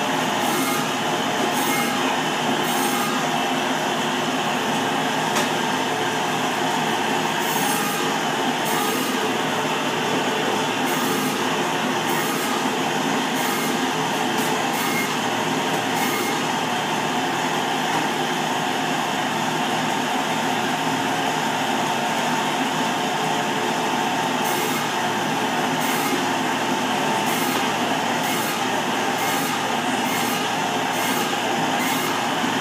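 Loud, steady mechanical drone with several held tones, the running machinery of a butcher's meat-cutting room.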